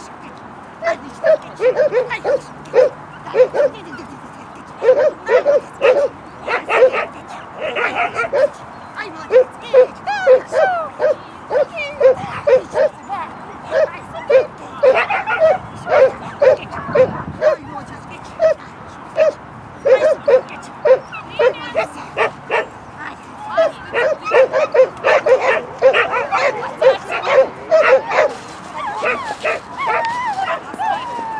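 Shetland sheepdog barking excitedly during play with a puller ring toy: quick runs of short barks, a few a second, with brief breaks.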